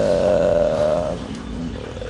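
A man's drawn-out hesitation hum, one held note of about a second that fades away. It is a filled pause between phrases.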